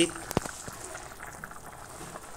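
A pot of curry boiling on a gas stove, a steady bubbling, with one sharp click about a third of a second in.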